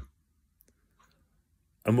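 A man's voice trailing off, then near silence broken by two faint clicks, before he starts speaking again near the end.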